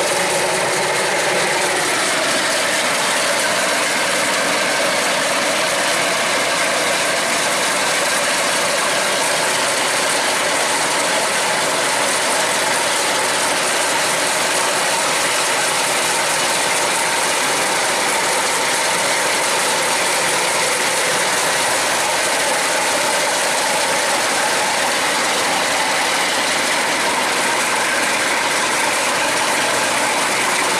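Kubota DC108X rice combine harvester cutting and threshing standing rice. Its 3800 cc Kubota diesel runs under load beneath a steady mechanical clatter from the harvesting gear.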